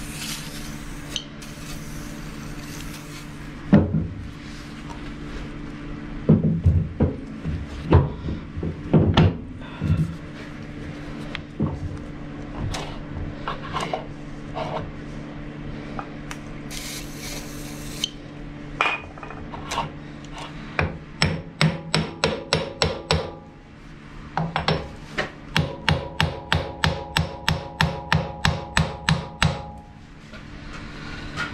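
An aerosol hissing as lubricant is sprayed onto the lathe's spindle nose, then heavy cast-iron lathe chucks being handled with metal knocks and clunks. In the later part comes a regular run of metallic clicks, about three a second, with a ringing tone.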